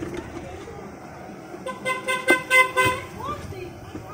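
A vehicle horn honks in four or five quick toots about halfway through, over a background of street noise.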